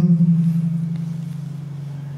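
A low steady hum that fades slowly after a chanted Quranic line breaks off: the lingering echo of the reciting man's voice.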